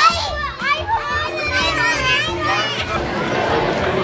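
Several children talking and squealing excitedly over each other, with music playing underneath.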